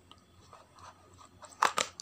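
Near quiet, then a quick run of three or four sharp crunching clicks near the end, from a plastic tub of diced carrots being handled.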